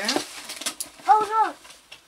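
Paper rustling and a few light clicks from unpacking a gift box, then about a second in a short, high-pitched voice sound that rises and falls once.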